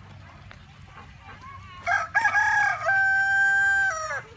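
A rooster crowing once, starting about two seconds in: one long call held on a steady pitch that falls away at the end.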